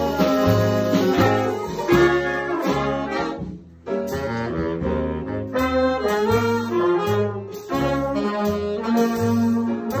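Jazz big band playing live: saxophones, trumpets and trombones over an upright bass changing notes about twice a second. The band drops out briefly a little past three seconds in, then comes back in.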